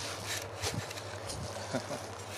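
Footsteps crunching on dry leaves and pine needles, a handful of irregular steps.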